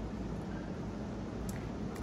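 Faint swishing of carbonated seltzer held in a closed mouth, over a steady low background hum.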